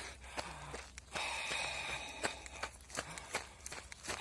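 A runner breathing out through his open mouth, one long breath about a second in that lasts about a second, steady rather than panting. Footfalls tap at intervals.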